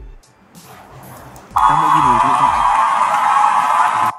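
A sound effect from CapCut's built-in library, slowed to half speed (0.5x), playing back in the editor preview. It starts suddenly about a second and a half in as a loud, dense, steady sound with drawn-out voice-like sounds under it, and cuts off abruptly as playback stops.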